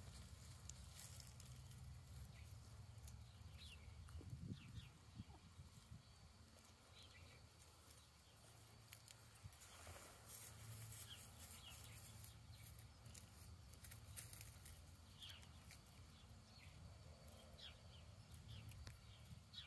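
Near silence: faint outdoor background with a low rumble and scattered soft, short chirps and clicks from birds.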